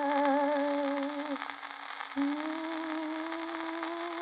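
A 78 rpm record playing on an acoustic horn gramophone: a singer holds a long note with vibrato, breaks off for under a second, then holds another long note, over the record's surface noise.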